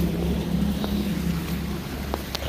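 A steady low hum, like a running machine, with wind rumbling on the microphone.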